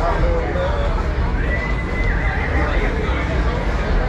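Fiddle playing a high held note about midway that then slides down in pitch, after a few short sliding notes, in a whinny-like squeal.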